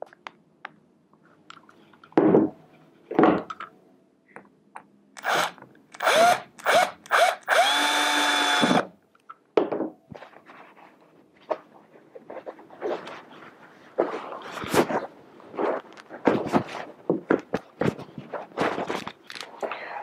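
Cordless drill-driver driving small self-tapping screws into the hardboard edge of an upholstered armrest cover: a few short trigger spurts, the motor rising in pitch, then a steady run of about a second. Later, hands rub and scrape over the upholstery fabric.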